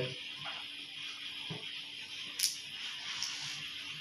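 Faint handling sounds of a smart band's tracker pod being pushed out of its silicone strap, with one short sharp click about two and a half seconds in.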